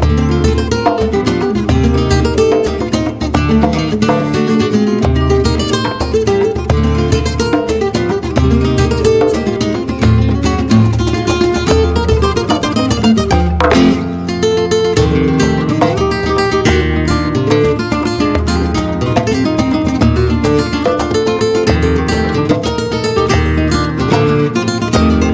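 Two flamenco guitars playing a guajira together, a lead line over a second guitar, with a hand drum keeping the rhythm underneath. There is a sharp strummed stroke about fourteen seconds in.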